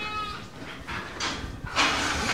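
An Angora goat bleats once, a short steady call that ends about half a second in, followed by a few faint scuffles.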